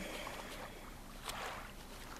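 Faint steady hiss with a soft swell a little over a second in.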